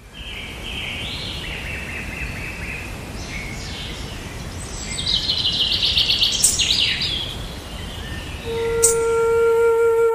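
Birds chirping and calling over a steady outdoor background noise, with a rapid trill about halfway through. Near the end a flute comes in on a long held note.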